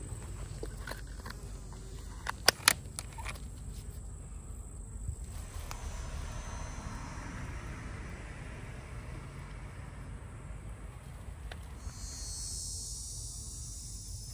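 Hand-pump garden sprayer hissing as its wand sprays the ground and the bottoms of wooden hive stands, turning to a higher, sharper hiss near the end. Two sharp clicks come about two and a half seconds in.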